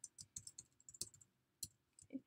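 Faint keystrokes on a computer keyboard: a quick run of irregular taps, with a short pause about two-thirds of the way through.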